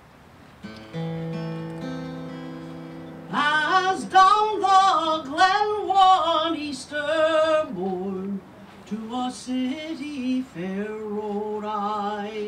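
A woman singing a slow ballad with vibrato to an acoustic guitar. A guitar chord is struck about a second in, and her voice enters about three seconds in.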